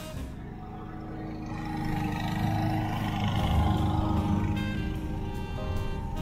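Background music, with road-vehicle engine and tyre noise that swells to a peak a few seconds in and then eases off.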